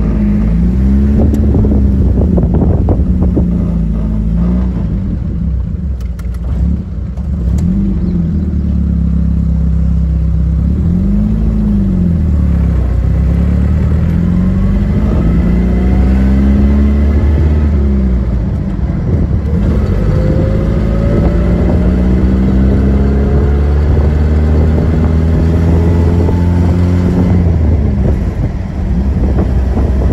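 A 1951 MG TD's four-cylinder engine running under way, its pitch rising and dropping several times in the first half, then climbing steadily for a long stretch before easing off near the end.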